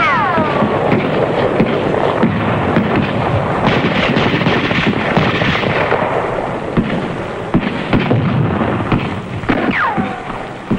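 Battlefield gunfire: dense, rapid cracking of rifle and machine-gun fire with heavier bangs mixed in. Falling whistling whines sound at the start and again near the end.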